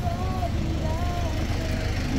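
Steady low rumble of a nearby motor vehicle engine in street traffic, with faint voices over it.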